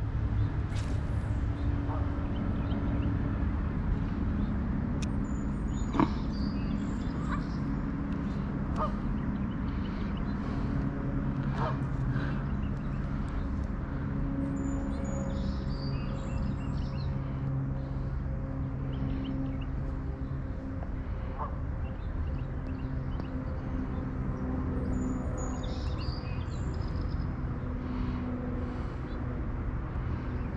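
Small engine, most likely a lawn mower, running steadily in the background, its pitch wavering a little, with a few faint clicks on top.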